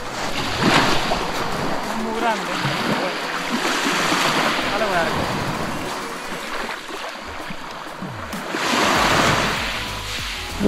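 Sea surf washing onto the beach, a steady rush with one wave surging about a second in and another near the end.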